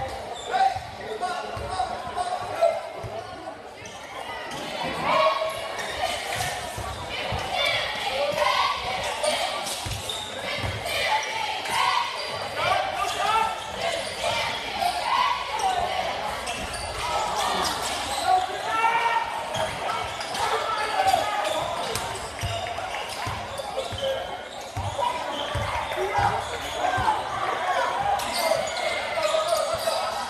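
Basketball dribbling and bouncing on a hardwood gym floor during live play, with crowd and player voices calling out in an echoing gym.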